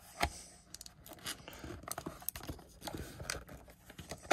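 Plastic casing of an Eco-Sol Max ink cartridge being pressed shut by hand: several sharp clicks, roughly one a second, as the lid's tabs snap back into place, with light scraping and handling of the plastic.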